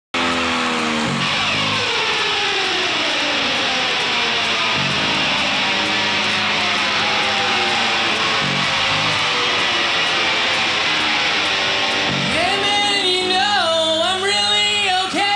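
A live punk rock band playing a song's intro: electric guitars and bass over a loud, sustained wash of sound, with a low note landing every few seconds. A sung lead vocal comes in near the end.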